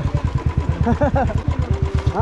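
Motorcycle engine idling close by, a steady rapid low pulsing that runs without change.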